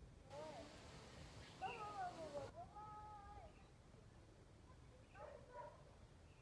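Faint animal calls: a few short, wavering cries, the loudest about two seconds in and another just after five seconds, with a faint hiss under the first half.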